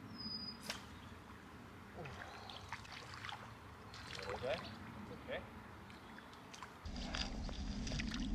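A hooked fish splashing at the water's surface, faint at first, with scattered light clicks. About seven seconds in, the sound turns louder and closer, with splashing and the handling noise of the spinning rod and reel as the fish is reeled in.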